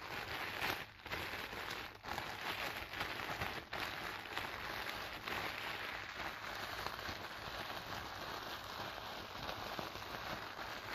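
Clear plastic wrapping crinkled and crumpled in the hands: a dense, continuous crackle with a few brief pauses in the first four seconds.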